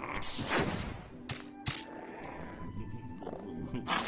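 Cartoon sound effects of a baby crocodile growling, with several sharp clicks, over background music.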